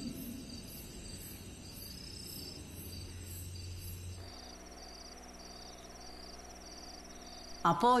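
Crickets chirping in an even, repeating rhythm of high-pitched pulses. About four seconds in, the chirping changes to a lower, slower pulse over a low steady hum.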